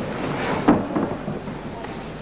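Arena crowd noise with scattered voices, broken by two or three sharp thuds from the grappling fighters about two thirds of a second and a second in.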